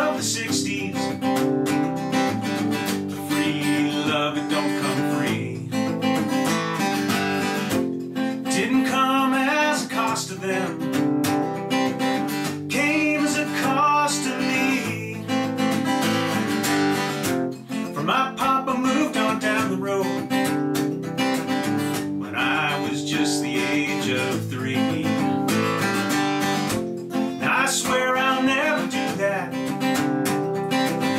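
Steel-string acoustic guitar strummed in a steady rhythm, with a man's voice singing over it in phrases a few seconds long.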